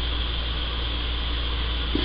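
Steady hiss with a low hum underneath, with no distinct event: the background noise of the recording between lines of dialogue.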